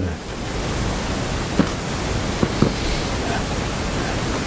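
Steady, even hiss of background noise, with three faint short clicks in the middle.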